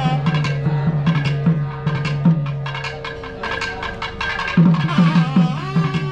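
Live South Indian temple procession music: a nadaswaram-type double-reed horn plays a wavering melody over a low steady drone, with fast drum strokes. The drumming drops away for about two seconds in the middle and comes back loudly near the end.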